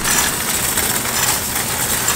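A loaded shopping cart rolling over parking-lot asphalt, a steady rumbling noise of its wheels and wire basket.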